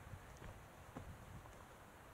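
Faint footsteps on a rocky dirt trail, about one step a second, over quiet outdoor hiss.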